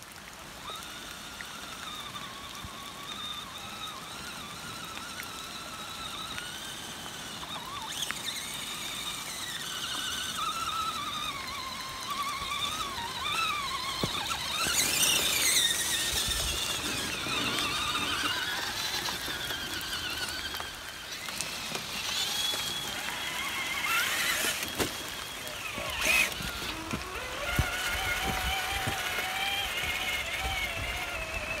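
Electric motors and geared drivetrains of RC scale crawler trucks whining, the pitch rising and falling with the throttle. A louder rush of noise comes about halfway through, as a truck drives through muddy water.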